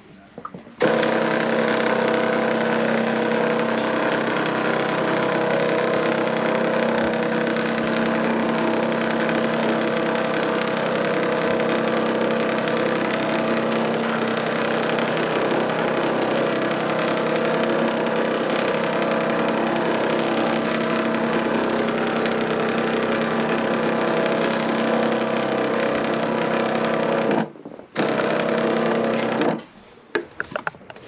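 Ryobi battery-powered pump sprayer's motor running steadily while pre-spray is sprayed onto carpet. It cuts out for a moment near the end and starts again.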